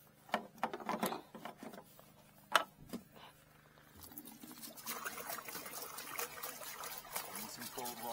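A few sharp knocks as plastic water jerrycans are handled. About four seconds in, water starts pouring from a jerrycan into a bucket, a steady splashing that runs on.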